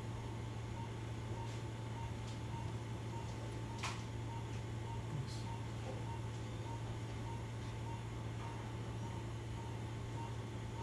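Operating-room patient monitor beeping a steady pulse tone, a little under two beeps a second, over a steady low hum of room equipment. A single sharp click about four seconds in.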